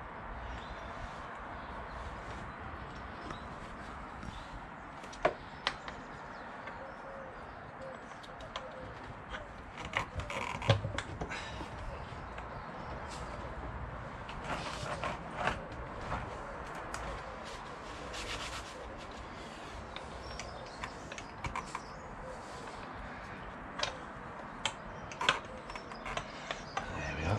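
Scattered light clicks, knocks and rubbing of metal parts as a motorcycle engine's clutch cover is worked loose by hand, over a steady background hiss. A cluster of louder knocks comes about ten seconds in, and more near the end.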